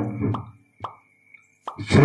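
A man's announcing voice breaks off, leaving about a second of near quiet broken by two short pops, and starts again near the end. A faint steady high-pitched tone runs underneath.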